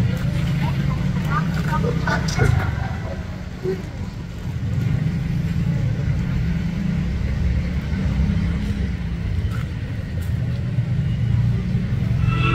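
A steady low rumble, with brief murmured voices in the first few seconds.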